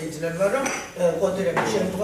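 A person speaking, with a couple of light clinks like tableware.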